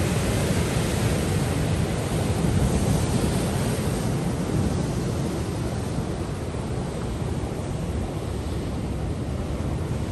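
Ocean surf breaking and washing over a rocky shoreline in a steady loud rush, with wind rumbling on the microphone.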